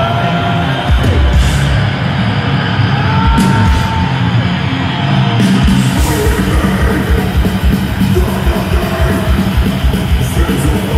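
Swedish death metal band playing live through a concert PA: heavily distorted guitars and drums at full volume, with a rapid kick-drum pulse coming in about halfway through.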